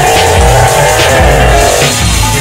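Electronic music with a heavy, pulsing bass beat and sliding synth tones.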